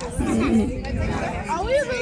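Indistinct voices talking and chattering, over a low rumble of wind on the phone's microphone.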